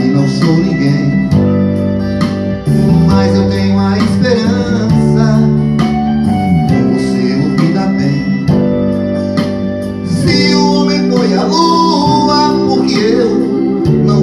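Instrumental break of a pop backing track: sustained electronic-organ chords under plucked guitar.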